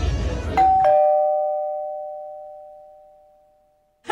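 Two-note doorbell chime, ding-dong: a higher note then a lower one struck a fraction of a second apart, both ringing on and fading away over about three seconds. It plays as the festival crowd sound cuts off.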